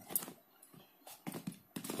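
A few soft knocks and rustles from a pair of lace-up sneakers being handled over a woven mat, with a near-silent gap in the middle.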